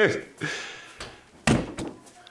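Brief laughter, then a single sharp thump about one and a half seconds in that dies away within half a second.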